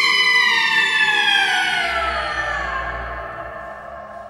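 A long, high scream that slides slowly down in pitch and fades out, over low background music.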